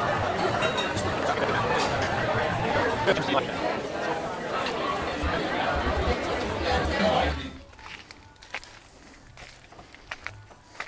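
Busy restaurant dining room: many people talking at once. About seven seconds in it cuts off abruptly to a much quieter background with a few faint, scattered clicks.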